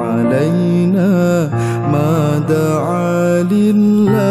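A man singing an Arabic sholawat in long, wavering melismatic phrases over acoustic piano accompaniment.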